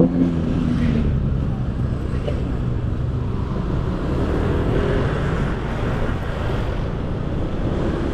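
Motor scooter engine running steadily at low road speed, with road and wind noise on the microphone.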